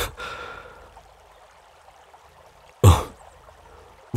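A man's voice in the pause between lines: a soft breath out just after the start, then one short, loud voiced sigh or 'hm' about three seconds in, over a faint steady hiss.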